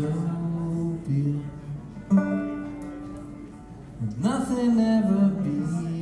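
A small live band playing: a singer's long held notes over a plucked banjo and keyboard, in drawn-out phrases.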